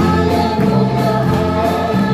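A congregation singing a hymn together, led by a man's voice on a microphone, with hands clapping along to the beat.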